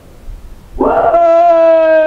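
A man's voice over a microphone, holding one long chanted note that starts about a second in and slowly sinks in pitch.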